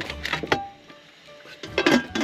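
Soft background music, with a metal clatter near the end as a stainless pressure cooker's lid is set on and locked into place.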